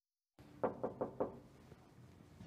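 Four quick knocks on a bedroom door, about a fifth of a second apart, starting a little over half a second in.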